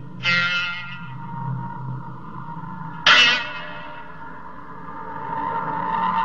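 Biwa struck hard twice with its plectrum, about three seconds apart; each stroke is a sharp plucked chord that rings out. Underneath runs a steady low drone, and a held higher tone swells toward the end.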